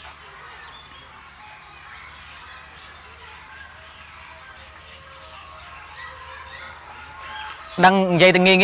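Faint bird chirps over quiet outdoor background noise during a pause in talk; a man's voice starts again right at the end.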